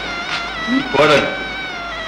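Film soundtrack: a long held, slightly wavering note from the background score, with a short vocal cry about a second in.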